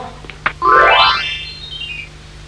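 A comic sound-effect sting: a short click, then a loud rising swoop followed by a few high notes stepping downward.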